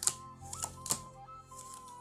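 Tarot cards dealt from the deck onto a table: three sharp card snaps in the first second, the first the loudest, over soft background music.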